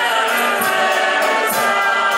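Live Ukrainian wedding band playing a table song: accordion and trumpet over bass drum and cymbal strokes, with voices singing along.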